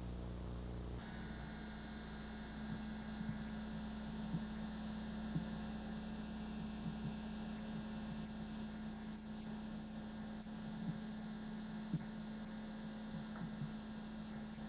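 Steady electrical hum with a few faint clicks and no music; the hum shifts in pitch about a second in.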